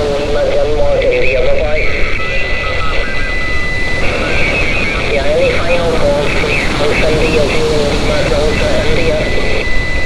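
Single-sideband voice on the 17-metre amateur band from a Xiegu G90 HF transceiver's speaker. A distant station's speech comes through thin and garbled under a hiss of noise, and a steady whistle comes in twice, for about two seconds each time.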